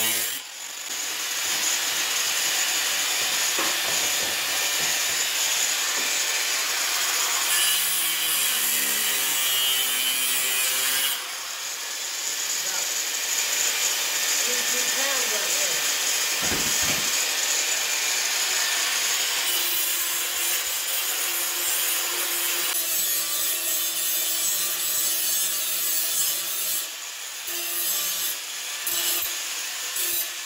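Angle grinder with a four-inch cutoff wheel cutting through the steel of a car door frame: a steady, loud grinding that dips briefly about eleven seconds in and breaks into shorter cuts near the end.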